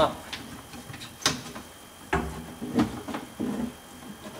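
Handling noise from a window regulator cable and mechanism being threaded into a car door by hand: a sharp click about a second in, then a few irregular knocks and rustles.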